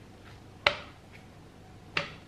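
A peeled banana handled and dropped into a plastic Nutribullet blender cup: two short, sharp knocks about a second and a quarter apart.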